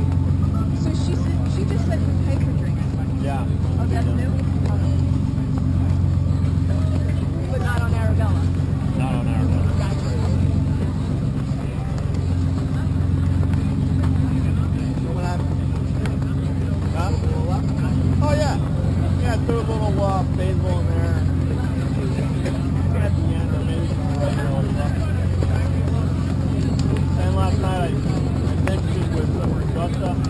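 A steady low machine hum runs under indistinct, distant-sounding conversation that comes and goes.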